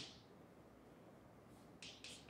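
Near silence: room tone, with a short faint scratch of chalk on a blackboard near the end.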